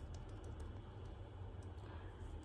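Faint, irregular soft taps of fingertips patting moisturizer into the skin of the face, over a low steady hum.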